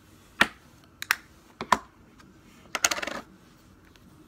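Plastic makeup compacts being handled: three sharp clicks about half a second apart, then a short rattling clatter near the end.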